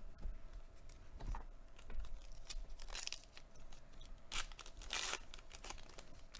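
Foil trading-card pack being torn open and crinkled by hand, with scattered crackles and louder rips about halfway through and again near the end.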